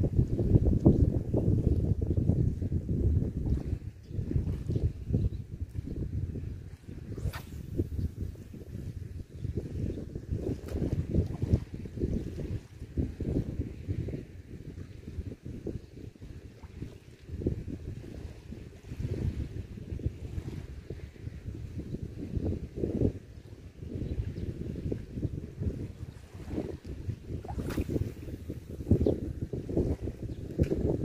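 Wind buffeting the microphone in gusts, a rumble that swells and eases.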